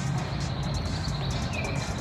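Outdoor background with a steady low rumble, and a bird's short whistled call about one and a half seconds in.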